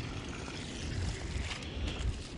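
Water gushing from a sump pump's discharge hose onto leaf litter, a steady rushing splash, with wind buffeting the microphone.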